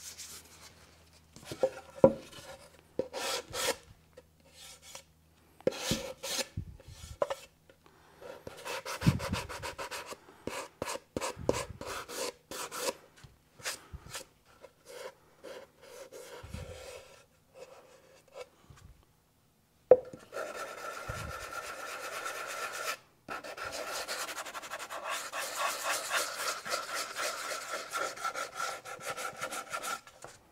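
A hand-held sanding disc scrubbing along the edges of a wooden cradled panel to take off rough, loose decal edges. For about the first twenty seconds there are scattered scrapes and light knocks. After that the sanding runs as a steady rasping scrub for the last ten seconds or so.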